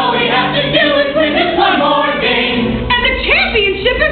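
A group of voices singing together as a chorus.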